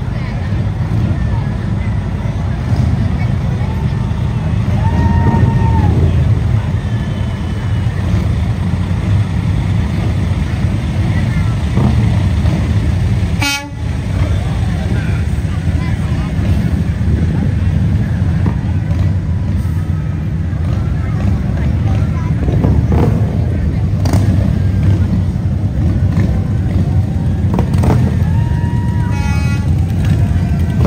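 Parade vehicle engines rumbling steadily as a vacuum truck and then a group of touring motorcycles pass close by, with a couple of short horn toots, one early and one near the end.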